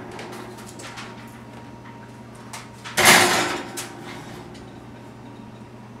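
A foil-covered metal baking pan put into an oven and slid onto the wire rack: light knocks, then one loud scraping clatter about halfway through. A steady low hum runs underneath.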